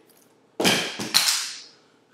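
Two sharp clattering knocks about half a second apart, each trailing off briefly, as workout gear is handled at floor level.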